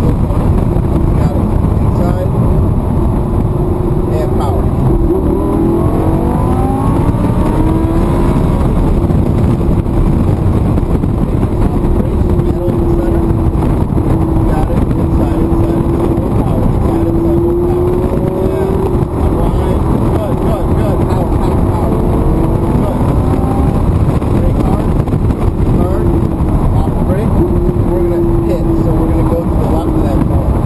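Lamborghini V10 engine heard from inside the cabin at track speed, over steady road and wind noise. The engine note climbs in pitch several times between about five and eight seconds in as the car accelerates, then holds a steady, wavering drone.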